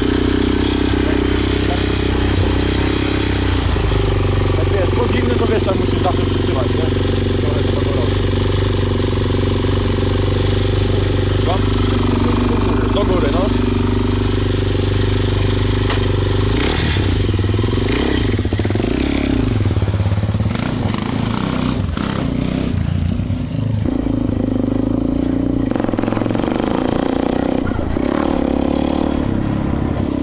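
Suzuki LT-Z400 quad's single-cylinder four-stroke engine running steadily at low revs. A little past halfway the revs rise and fall a few times, then it settles steady again.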